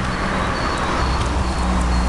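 Street traffic noise with a steady low rumble, swelling about halfway through as a vehicle passes, with faint bird chirps above it.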